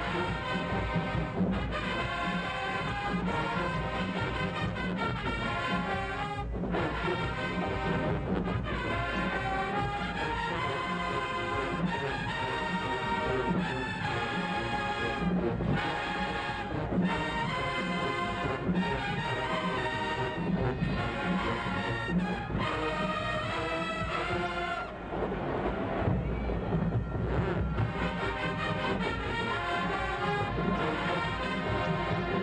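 Marching band playing a loud brass-and-drum tune in the stands, keeping a steady beat.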